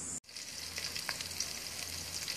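Chopped garlic and onion sizzling in hot oil in a stainless-steel pot: a steady, dense crackle that starts suddenly a moment in. The aromatics are being browned.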